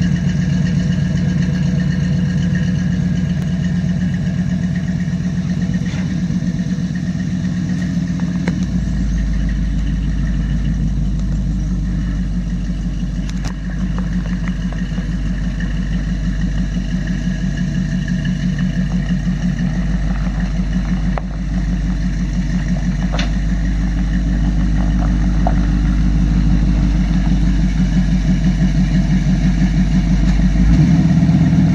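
1979 Chevrolet pickup's 350 V8 with a Comp Cams camshaft and full tube headers, running steadily at idle and low speed as the truck pulls away. A deeper rumble joins about eight seconds in.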